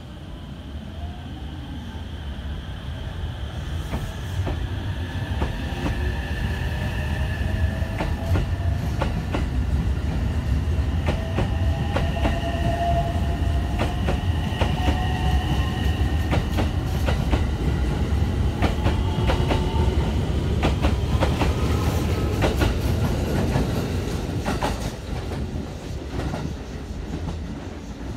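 A JR West 225-series electric multiple unit pulling away and accelerating. Its inverter-driven traction motors whine in tones that climb steadily in pitch, over a heavy rumble and the clack of wheels over rail joints. The sound grows louder for the first several seconds, holds, then falls away near the end.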